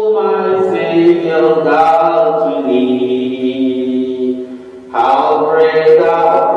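Voices singing a slow hymn in long held notes, with a short break between phrases about four and a half seconds in.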